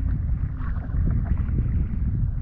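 Steady low wind rumble buffeting the microphone, with shallow seawater washing and sloshing.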